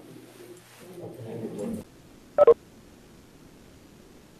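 Indistinct murmur of voices in the room, cut off abruptly a little under two seconds in, then two short electronic beeps in quick succession, the loudest sound: the Webex tone as the meeting stream ends.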